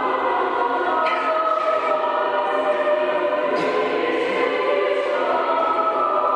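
Choral music: voices singing long, held chords that change a few times.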